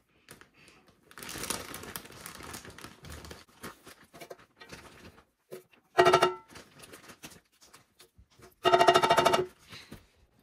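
Brown sugar being scooped with a soft rustle. Then a metal tablespoon is knocked against the bread machine's metal baking pan to empty it, in two short, loud, ringing bursts of quick taps: about six seconds in and again near nine seconds.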